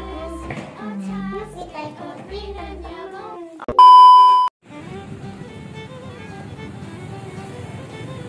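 Light children's background music, broken about three and a half seconds in by a loud, steady 1 kHz test-tone beep of under a second that cuts off suddenly, as in a TV colour-bars glitch transition. Street noise with traffic follows, under quieter music.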